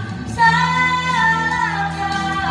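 A boy singing a Malay pop ballad into a microphone over a backing track, starting a long held phrase about half a second in.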